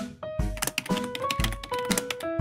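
Background music with piano-like notes, with a quick run of typing clicks laid over it from about half a second in for over a second: a typewriter-style sound effect for text appearing on screen.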